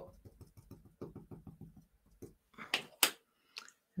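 Small felt ink pad tapped quickly and lightly against a clear acrylic stamp block, a run of faint ticks, then a few sharper knocks about three seconds in as the acrylic block is set down on the card.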